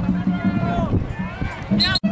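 Several voices shouting over one another from the sidelines during a play, with a short high rising cry near the end, over a steady low hum.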